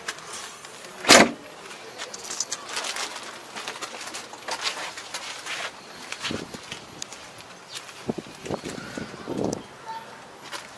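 Outdoor ambience with indistinct voices in the background and scattered small clicks, broken by one sharp, loud knock about a second in.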